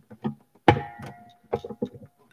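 Acoustic guitar being tuned between songs: a few short muted taps, then a string plucked about a second in and left ringing while the tuning peg is turned, followed by a few quick plucks.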